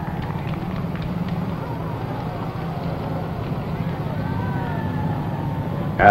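A crowd cheering and shouting over a steady low rumble of vehicle engines, on an old film soundtrack.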